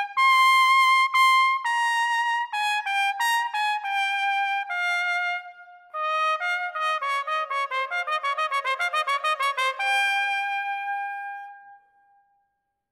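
Unaccompanied trumpet playing: a phrase of sustained notes that ends about halfway through, then after a short breath a fast run of short, separately tongued notes, closing on a long held note that fades away near the end.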